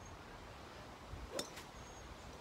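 A single sharp click about one and a half seconds in, as a practice swing of a golf driver strikes a target hung from a PVC stand.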